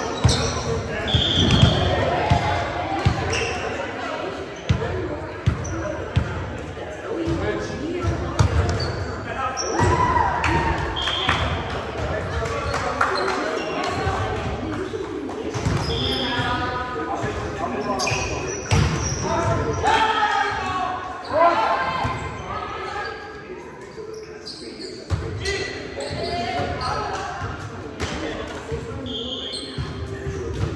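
Indoor volleyball play in a large, echoing gym: the ball is struck and bounces on the hardwood floor again and again, with players' voices calling out throughout.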